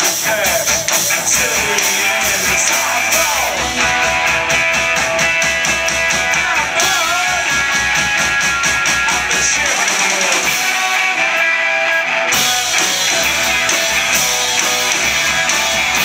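A live rock band plays loudly: electric guitar strumming over bass and drum kit. About ten seconds in, the drums and bass drop out for roughly two seconds, leaving the guitar, then the full band comes back in.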